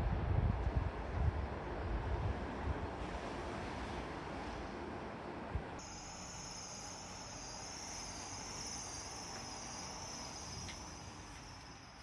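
Wind rumbling on the microphone in uneven gusts, fading away. About halfway through it gives way to a steady, thin high-pitched whine with a slow regular wobble in pitch.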